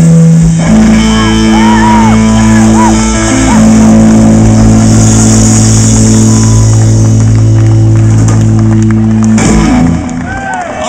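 Live blues band of electric guitars, bass and drums holding one long closing chord, which stops abruptly just before the end. Short rising-and-falling whoops ride over the chord in its first few seconds.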